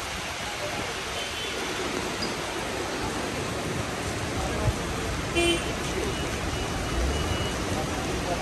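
Steady hiss of heavy monsoon rain, with voices in the background and a short, high toot about five and a half seconds in.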